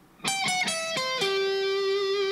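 Electric guitar playing a short alternate-picked melody on the first string: about five notes stepping down in pitch, the last one held and ringing.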